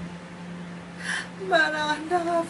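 A woman crying: a sharp, breathy in-breath about a second in, then a wavering, high-pitched sobbing cry, over a steady low hum.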